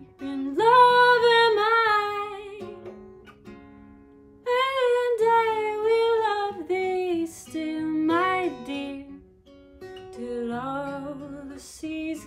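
A woman singing a slow Scottish folk love song, accompanying herself on acoustic guitar. She sings in three phrases, with vibrato on the held notes, and the guitar notes carry on through the short gaps between phrases.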